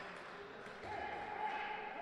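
Faint ambience of an indoor handball hall during a stop in play, with a faint held tone coming in a little before halfway.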